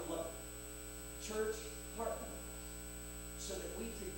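Steady electrical mains hum in the recording, with a man's voice breaking in for a few short bursts of speech.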